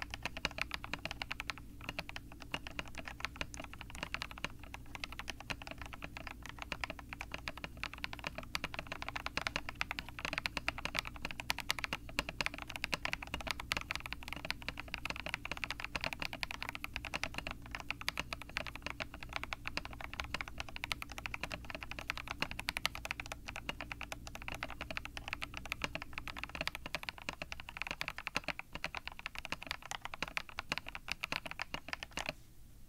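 Continuous typing on a Rama Works Kara mechanical keyboard with its case dampener installed, KTT Peach linear switches lubed with Krytox 205g0, C3 Equalz stabilizers and PBT keycaps: a steady, irregular stream of keystroke clacks.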